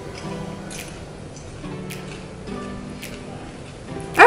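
Soft background music: held low notes that change every half second or so, with a light click about once a second.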